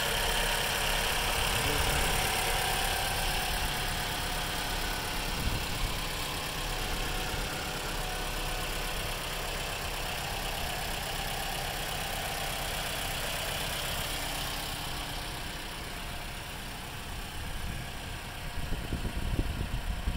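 Toyota Camry 2.5-litre four-cylinder engine idling steadily under the open hood.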